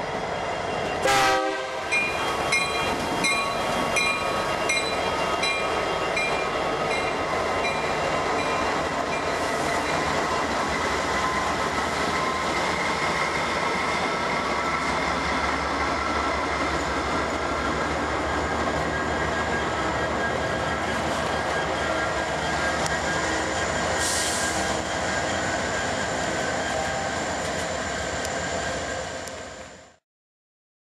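Freight train passing close by: trailing diesel locomotives running, then freight cars rolling along the rails in a steady rumble. There is a sharp loud clank about a second in, and an evenly spaced ding about twice a second over the first several seconds.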